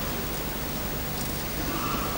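Steady hiss and room tone of an old camcorder recording in a church, with no clear event; near the end a single steady note comes in.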